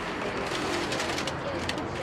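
A foil-lined bag crinkling as cornflakes are shaken out of it into a plastic tub, with the dry flakes rattling in quick, irregular clicks.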